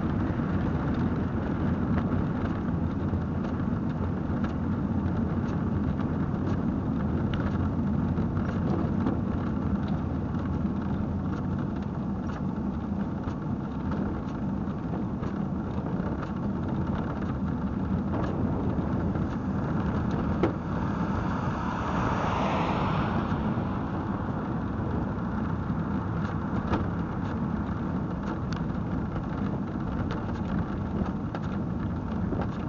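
Steady low rumble of tyre and wind noise inside a velomobile's shell while riding on asphalt, with a brief louder hiss swelling and fading about two-thirds of the way through.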